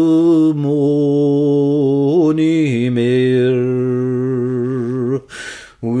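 A male folk singer, unaccompanied, holding long drawn-out notes of a Scots ballad with a slight waver in pitch, stepping down to a lower note about two and a half seconds in. The voice breaks off briefly near the end.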